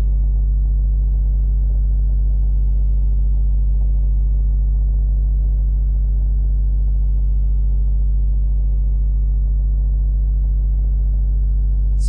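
Steady low electrical hum with a stack of buzzing overtones, holding level and pitch throughout. It is mains hum picked up in the recording.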